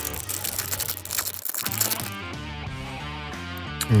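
The foil wrapper of a hockey card pack crinkles and crackles as it is torn open during the first couple of seconds, over background music.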